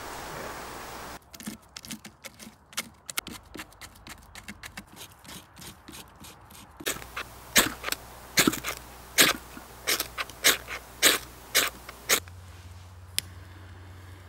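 Kindling and birch bark crackling as a fire is lit, many small sharp clicks followed by a run of louder sharp cracks about twice a second, which stop about two seconds before the end.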